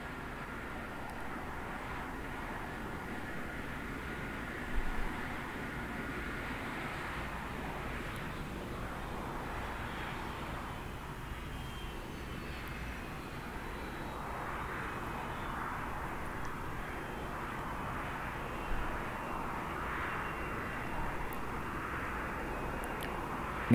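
Jet engines of a Boeing 747, the Shuttle Carrier Aircraft, running at low power as it taxis, heard from a distance as a steady rushing noise with a faint high whine. Two brief louder swells come about five and about nineteen seconds in.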